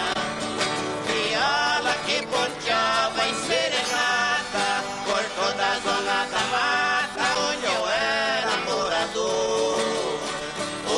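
Two violas caipira, the ten-string Brazilian folk guitars, playing an instrumental interlude between verses of a sertanejo song, a plucked melody with sliding notes over strummed accompaniment.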